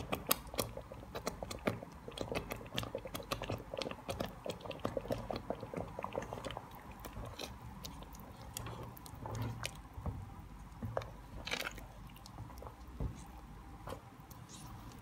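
Thick butter chicken gravy being stirred with a silicone spatula in the pan, giving many small wet squelches and crackles as fresh cream is mixed in. The crackling is dense for the first half, then thins out to scattered louder pops.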